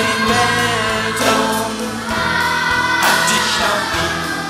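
Live pop-rock band music with guitars, and a children's choir singing along with the lead voices.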